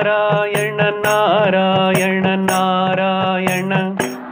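A man singing a devotional chant in long, held, ornamented phrases, with sharp jingling strikes from a hand-held jingle instrument about every half second to second, over a steady low drone.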